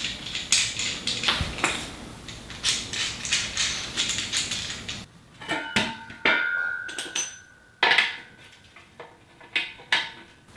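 Small metal hardware clicking and rattling as a nut is twisted onto the threaded bolt of a leveling foot. About halfway through come sharper, separate metal clinks and knocks with a brief ring as the metal rack base is handled, the loudest knock late on.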